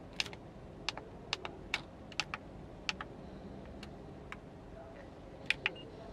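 Buttons on a Kenwood double-DIN car stereo head unit being pressed: about a dozen sharp plastic clicks at an uneven pace.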